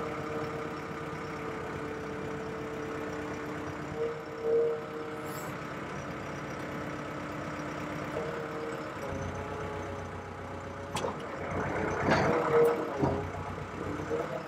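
Diesel engine of a SkyTrak 6036 telehandler running steadily at idle. About nine seconds in its note shifts lower and deeper, and near the end it grows louder and rougher, with a couple of sharp clicks.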